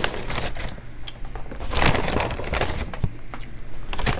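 Paper takeout packaging rustling and crackling as it is handled, with a louder burst of rustling about two seconds in.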